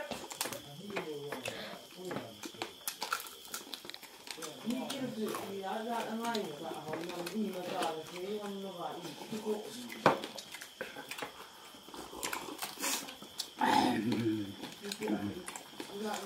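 People eating rice and fish by hand: scattered chewing and lip-smacking clicks, with low voices in between. A steady faint high tone sits behind it.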